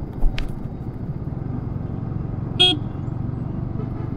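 Yamaha R15 V3 single-cylinder engine and road noise while riding at about 30 km/h, a steady low rumble with a brief thump just after the start. A single short horn toot sounds about two and a half seconds in.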